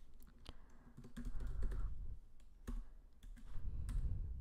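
Computer keyboard being typed on, keys clicking at an irregular pace.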